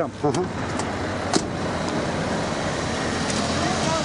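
Steady roadside traffic noise, a constant rush of vehicles on the road, broken by two sharp clicks, the second about a second and a half in.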